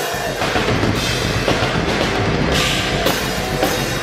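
Live hard rock band playing loud through a club PA: a pounding drum kit with bass guitar and electric guitar, heard from the audience floor.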